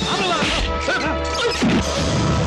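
Movie fight-scene soundtrack: dramatic background music with added punch and crash impact effects. The loudest hit comes about three-quarters of the way in.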